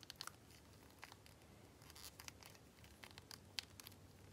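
Near silence, with faint scattered small clicks of fingers handling a plastic toy figure while pressing resin eyes into its head.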